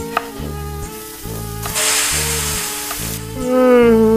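A loud sizzle of food hitting hot oil in a kitchen pan, lasting about a second and a half from about 1.6 s in, over background music with a steady beat. A single sharp knife chop on a cutting board comes just after the start, and near the end a man's voice sets in with a long, falling held note.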